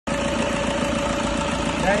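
Car engine idling steadily, with a steady high tone running over the engine noise; the engine is being listened over for a bearing noise.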